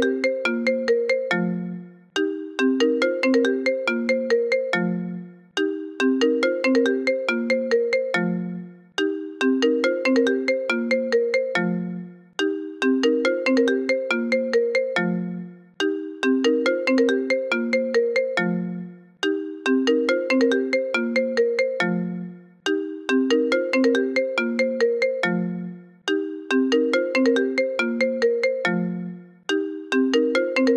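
A phone ringtone melody loops over and over: a short phrase of quick notes ending on a lower note, repeating about every three and a half seconds.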